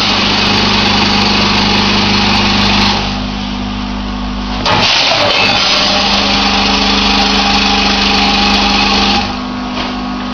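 A grain weighing and packing machine running, its vibratory feed trays giving a steady electric hum under the hiss of grain streaming along them. The hiss falls away twice, for about a second and a half each time, before picking up again.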